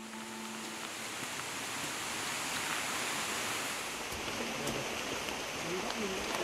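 Steady rushing wash of heavy rain, building slightly. At the start the last notes of a mallet-percussion music chord die away.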